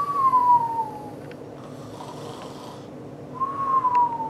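Mock cartoon snoring by a person: breathy snores, each followed by a falling whistle on the out-breath through pursed lips, twice.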